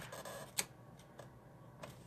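Cardstock being handled on a craft table: a brief paper rustle, then a sharp click and a few fainter light taps.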